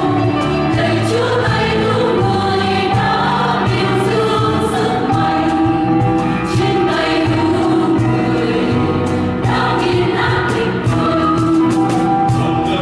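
Mixed church choir singing a Vietnamese hymn in parts, with voices held steadily throughout.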